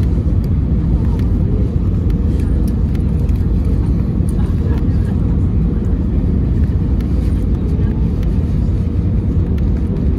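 Airbus A320neo cabin noise on approach, heard from a window seat over the wing: a steady, deep rumble of the engines and the airflow over the extended flaps, with a faint steady hum.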